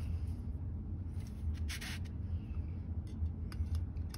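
Thin steel rod being pushed inside the steel tube of a home-built rifling cutter to advance the cutter, giving a few faint metallic clicks and scrapes over a steady low hum.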